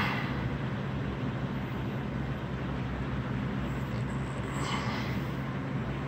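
A steady low mechanical hum with an even hiss over it, unchanging throughout, with a faint brief rustle about two-thirds of the way through.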